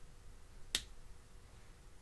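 A single sharp plastic click about three quarters of a second in: a felt-tip marker's cap being pressed shut.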